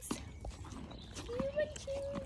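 Scattered sharp clicks and knocks from a horse nosing and moving right up against the phone, with a soft drawn-out voice in the second half.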